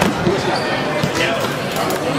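Voices of onlookers echoing in a gym, with a sharp thud right at the start and another just after: wrestlers' bodies hitting the mat as one is driven onto his back.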